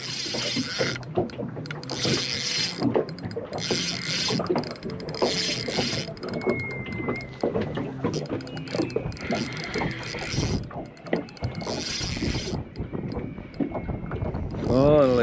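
Spinning reel being cranked in while a hooked fish is played, its gears whirring and clicking in repeated spells of winding.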